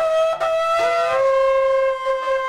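Two long spiralled shofars blown together in sustained blasts, their two notes sounding at once and clashing; one note slides in pitch about a second in and then holds. This is the last shofar blowing, the one that closes Yom Kippur.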